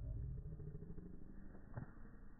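Slowed-down, deep-pitched sound of slow-motion footage: a low rumble with a drawn-out pitched tone fading early on, and a single knock near the end.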